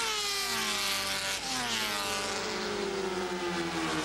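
Several Grand Prix racing motorcycle engines running at high revs, a number of overlapping engine notes each falling steadily in pitch. A new note comes in partway through.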